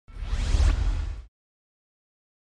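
Whoosh sound effect for a logo reveal, a rising sweep over a deep bass rumble, lasting just over a second and then cutting off.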